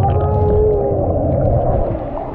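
A child's voice holding one long, slightly wavering note that stops a little past halfway, over the steady churning rumble of bubbling hot tub jets.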